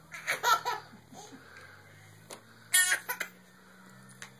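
Baby laughing in two short bursts, one right at the start and a higher-pitched one about three seconds in.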